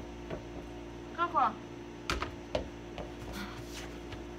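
A few sharp knocks from a small toy basketball being thrown and bouncing, the strongest about two seconds in. A short falling vocal sound comes a little after a second in.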